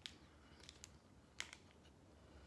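Near silence with a few faint clicks from chewing a bite of a chocolate brownie fiber bar; the loudest click comes about one and a half seconds in.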